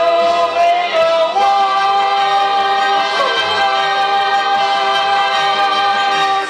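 A man singing a show-tune finale over a backing track, stepping up about a second and a half in to one long held note.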